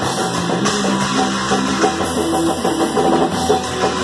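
Punk band playing live: drum kit, electric guitar and bass guitar together at a fast, loud, steady pace.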